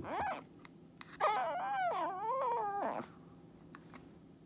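Shih Tzu 'talking' with a bone held in its mouth: a short rising whine at the start, then about a second in a long whining call of nearly two seconds that wavers up and down in pitch.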